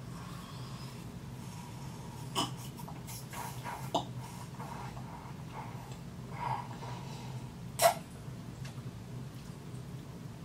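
A few short slurps and breaths as hot cocoa is sucked up through a Tim Tam biscuit held in the cup, the loudest about eight seconds in, over a faint steady low hum.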